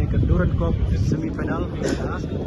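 Voices of people talking over a steady low rumble of street noise.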